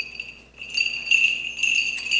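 Small metal bells jingling with a bright ringing tone and light clinks. The sound dies down about half a second in, then swells again.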